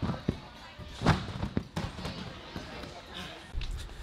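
Trampoline bed thumping as someone bounces and flips on it, several sharp landings spaced irregularly in the first two seconds, with gym background chatter.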